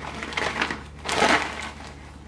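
Plastic zipper-lock bag crinkling as graham cracker sheets are dropped into it, with two louder rustles about half a second and a second and a quarter in.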